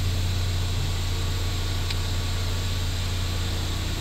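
Hyundai Grand i10 sedan's 1.2-litre engine idling with a steady low hum, and a faint click about halfway through.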